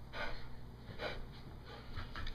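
A dog breathing hard in short, noisy breaths while spinning after its tail: it is out of breath from the chasing.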